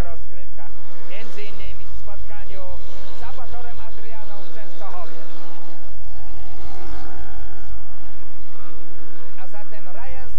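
Speedway motorcycles' 500 cc single-cylinder engines racing round the track, their pitch rising and falling as they are throttled through the bends.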